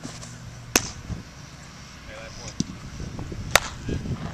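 A pitched baseball popping into the catcher's mitt about a second in, then a second, louder sharp leather pop near the end as the catcher's return throw is caught in the pitcher's glove.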